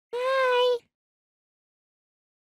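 A single high, drawn-out vocal 'hi' lasting under a second, held on one note with a slight waver.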